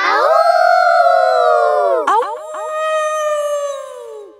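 Cartoon children's voices howling together like wolves, several gliding howls at once. About two seconds in, a single long howl takes over and slowly falls away. The children don't claim it, and it is presumably Granny Wolf howling off-screen.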